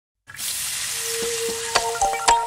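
A steady sizzle like food frying in a pan, used as an opening sound effect, starting abruptly after a brief silence. A held tone and a few light clicks join it, and the first pitched notes of the music come in near the end.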